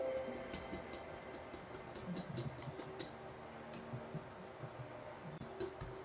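Wire whisk clicking against the sides of a glass bowl as it beats a batter, in irregular ticks that come thickest in the first three seconds and thin out after.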